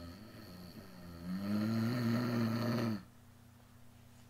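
A woman's voice acting out a snore for a read-aloud: a softer drawn-out snore, then a louder, longer one that stops abruptly about three seconds in.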